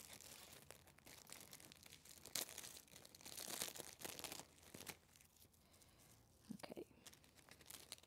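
Faint, irregular rustling and crinkling of paper quilling strips being handled and slid back into their packet, busiest around the middle.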